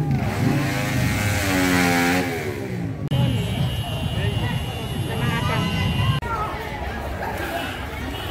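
A vehicle engine revving, its pitch falling and rising over about the first three seconds. After a sudden cut come crowd voices with a steady high tone, then more voices after another cut about six seconds in.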